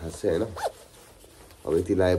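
A jacket zipper pulled quickly, a short zip about half a second in, with voice sounds either side.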